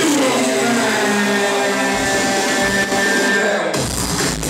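Electronic dance music played loud over a club sound system during a DJ set: a breakdown of held synth tones with the bass taken out. The bass and beat come back in just before the end.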